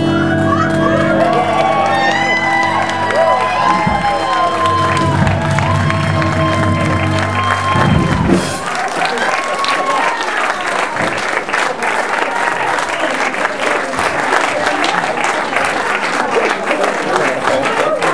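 A live swing band holds its closing chord with saxophone lines gliding over it, then cuts off sharply about eight and a half seconds in. The audience then applauds and cheers.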